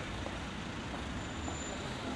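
Steady low rumble of background street traffic.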